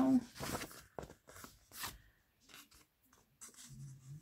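Paper pages of a picture book rustling and crackling as the book is handled and held open: a few short crinkles in the first two seconds, then quiet.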